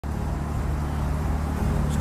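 Steady low rumble of a car's engine running, heard from inside the cabin.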